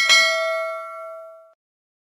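A single bell 'ding' sound effect for the clicked notification-bell icon. It rings out with several clear tones and fades away over about a second and a half.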